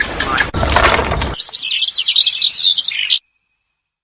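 A burst of noise, then, about a second and a half in, a quick string of high, wavering bird chirps and twitters lasting under two seconds that stops abruptly, followed by silence.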